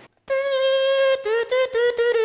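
A small wind instrument sounds one steady held note, then a few shorter, slightly lower notes from about a second in.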